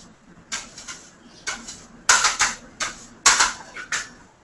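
Pizza dough being stretched and handled on a kitchen counter: a run of short, irregular soft knocks and brushing sounds, the loudest about two and three seconds in.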